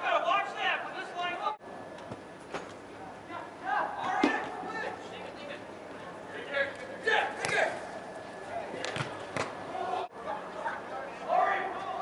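Scattered shouts from players and onlookers echoing in a large indoor soccer dome, with a few sharp thuds of the ball being struck. The sound breaks off abruptly twice, at edit cuts.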